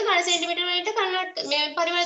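A high voice speaking in drawn-out, sing-song tones, holding long level notes with short breaks between phrases.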